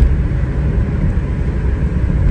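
Steady low rumble of a car's engine and road noise heard inside the cabin.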